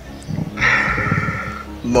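A short burst of laughter, quick pulses lasting about a second, over background music.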